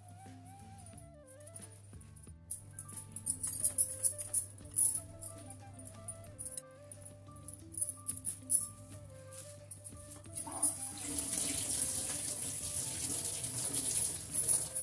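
Background music throughout. From about 2.5 s there is irregular clinking and rattling as a hand wearing many bangles mixes salted brinjal pieces in a glass bowl. From about 10.5 s a kitchen tap runs into a steel sink.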